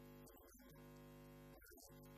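Near silence with a faint steady hum.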